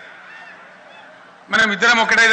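A man's speech pauses for about a second and a half, leaving only faint background noise with a few faint short chirps, then he resumes speaking.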